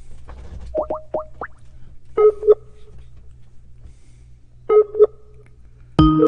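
Skype call tones while a dropped call is being reconnected: three quick rising chirps about a second in, then a short two-note ring that repeats about two and a half seconds later.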